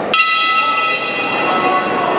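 Boxing ring bell struck once to start a round, ringing out and fading over about a second and a half above the steady hubbub of the arena.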